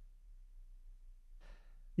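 A quiet pause with one faint breath, a person drawing breath, about one and a half seconds in, over a low steady hum.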